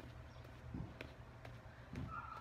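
Faint, soft footfalls of a person stepping in place on grass, about a second apart, with a single light click, over a low steady background rumble.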